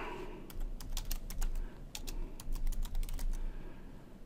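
Typing on a computer keyboard: a quick, uneven run of key clicks that starts about half a second in and lasts about three seconds.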